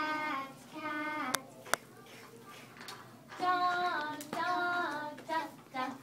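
Young children singing a song in short phrases of held notes, with a pause of about two seconds in the middle. Two sharp clicks come about a second and a half in.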